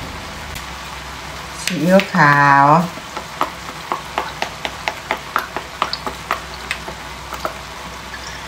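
Shredded vegetables frying in a hot pan with a steady sizzle. From about three seconds in, sharp crackles and pops come several times a second as light soy sauce is poured into the pan.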